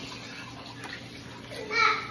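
Low, steady room noise, then one short vocal sound with a falling pitch near the end.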